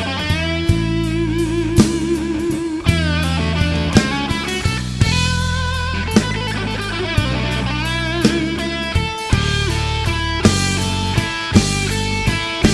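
Slow blues instrumental break: electric guitar lead with bent notes and wide vibrato over bass and drum kit.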